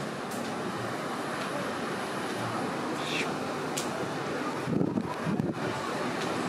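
Steady outdoor wind noise on the microphone, with a faint click a little before four seconds and a brief low rumble about five seconds in.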